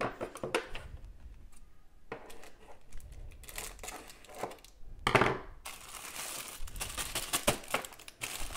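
Thin plastic candy wrapper crinkling as it is snipped open with scissors, with scattered sharp snips and rustles. There is a louder rustle about five seconds in, then steady crinkling.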